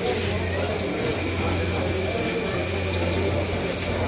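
Hilsa fish pieces frying in a shallow layer of oil on a large iron pan: a steady, hissing sizzle, with a steady low hum underneath.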